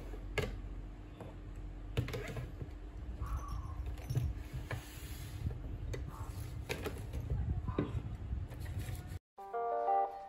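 Small tins and bottles being picked up and set down on a desk: scattered light clicks and knocks over a low room rumble. Near the end the sound cuts out and plucked guitar music begins.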